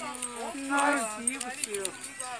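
Indistinct voices with no clear words, including one drawn-out vocal sound held for about the first second.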